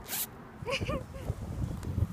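A zip on a fleece giraffe onesie pulled up in one quick stroke: a short, sharp rasp right at the start.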